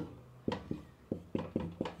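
Dry-erase marker writing on a whiteboard: about nine short strokes in quick succession over a second and a half as the letters go on.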